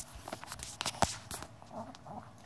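A small dog chewing a treat: a handful of short, sharp crunches, the loudest about a second in.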